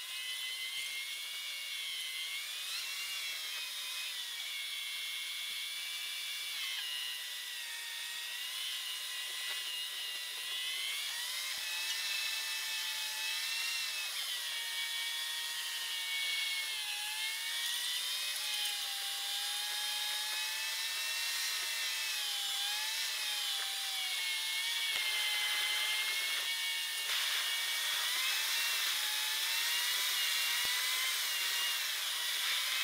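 A car's engine and road noise, recorded inside the cabin by a dashcam and played back sixteen times fast, so it comes out as a high, wavering whine like a drill that drifts up and down in pitch.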